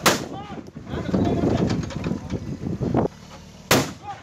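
Two gunshots, one right at the start and one about 3.7 s later, fired at an elephant stuck in a pit. The shooting is reported as deliberate, meant to kill.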